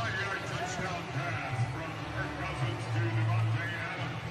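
Indistinct speech over a steady low background on a TV sports broadcast, with no distinct non-speech sound.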